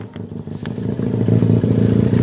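Honda CD175's air-cooled parallel-twin engine running through new dual megaphone mufflers as the motorcycle rides up, growing steadily louder as it approaches.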